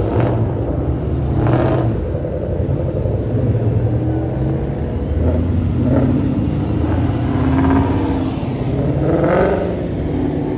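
Mustang engines driving past one after another with a steady low exhaust rumble. Several cars accelerate hard: loud revs about a second and a half in, around six to eight seconds, and again near the end.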